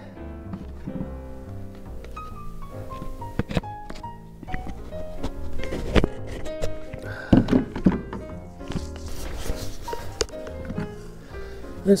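Background music, with scattered light plastic knocks and clicks of a Bauer 20 V lithium battery pack being pushed against the multi-tool's battery slot, which it will not seat into. The knocks are loudest about halfway through.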